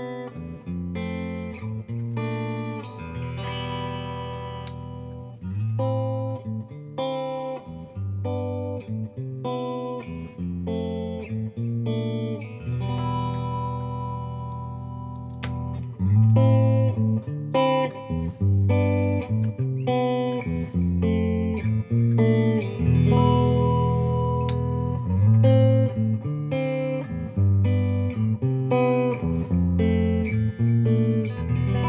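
Parker PDF70 electric guitar with two humbucking pickups played through an amp on a clean setting: picked single notes and chords, some chords left to ring out for a second or two. The playing gets louder about halfway through.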